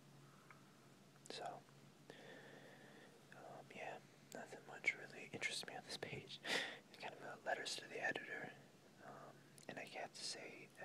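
Soft whispered speech, starting about a second in, with breathy hissing consonants, over a faint steady low hum.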